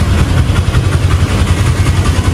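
Steady, loud low engine rumble of a vehicle idling close by.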